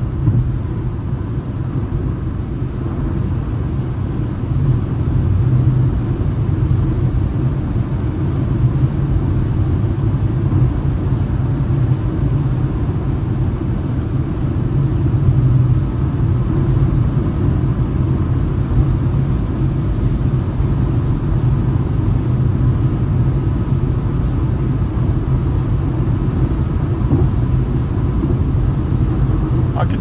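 Cabin noise of a Citroën C3 with its 1.0 three-cylinder engine cruising at about 137 km/h on a wet highway: a steady low rumble of tyres, engine and wind.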